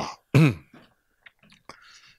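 A man briefly clears his throat into a handheld microphone, a short sound that falls in pitch, followed by a few faint clicks.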